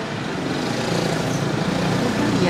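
Steady road-traffic noise of a busy street, with vehicles running past.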